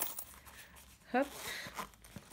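A sharp click from the metal clasp of a small fabric coin purse, then light rustling as the purse is handled.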